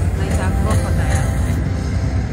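Slot machine bonus-round music and sound effects over a steady deep rumble, mixed with voices on a casino floor.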